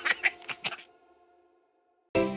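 Cartoon egg-cracking sound effects: a few short cracks in the first second, with a faint lingering tone that fades out about a second in.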